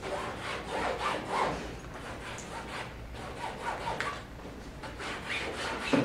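Rhythmic rubbing strokes of a painting tool worked across a canvas, about three strokes a second.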